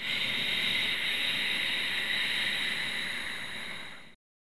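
A long audible exhalation, a steady hiss of breath made from the base of the throat, easing off slightly near the end and then stopping.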